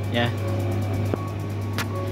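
Electrolux clothes dryer running, its motor humming steadily while the drum turns, with a faint rapid ticking and one sharp click about a second in. The drum turns now that the weak motor capacitor that kept it from spinning has been repaired.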